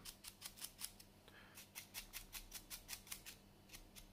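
A stiff drybrush scrubbing quickly over a plastic miniature: faint, scratchy bristle strokes, several a second, with two short pauses. The brush is heavily loaded for a heavy drybrush.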